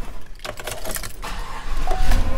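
Keys jangling and clicking in the pickup's cab, with a steady chime tone starting near the end.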